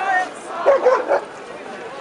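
A dog barking, a quick run of short barks about a second in, over the chatter of a crowd.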